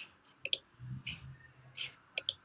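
A few faint clicks of a computer mouse: one at the start, a quick pair about half a second in, and another near the end.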